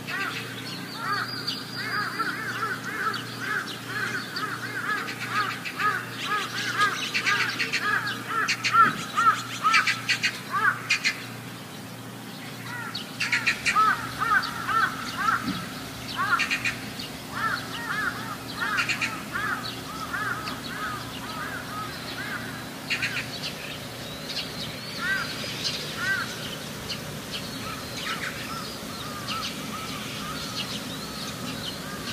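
Birds calling in long runs of quick, repeated notes, with a short pause about twelve seconds in. A steady low hum lies underneath.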